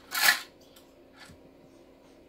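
A short puff of breath near the start, with a fainter one about a second later, over quiet room tone with a faint steady hum.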